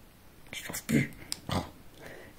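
Soft, breathy whispered speech with a couple of small clicks and a low knock about a second and a half in, from handling a makeup brush.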